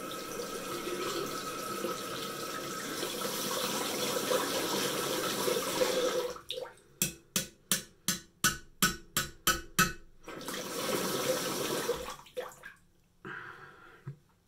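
Tap water running into a bathroom sink, cut off after about six seconds by a quick run of about a dozen sharp taps, roughly four a second; the water then runs again briefly before stopping.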